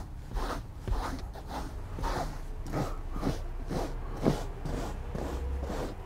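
A rubber pet hair brush scraping across cloth seat upholstery in quick repeated strokes, about two or three a second, lifting embedded pet hair out of the fabric.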